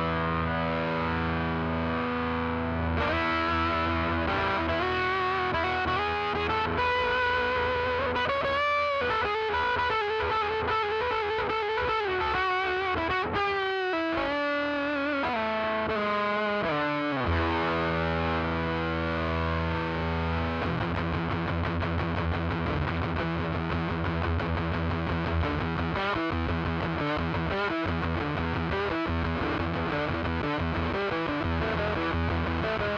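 Eastman T185MX semi-hollow electric guitar played through the Mayfly Demon Girl Fuzz pedal, a fuzz inspired by the Tone Bender. Held notes ring with heavy distortion and vibrato, with bends that glide downward about halfway through. Busier, choppy picking and strumming fill the last third.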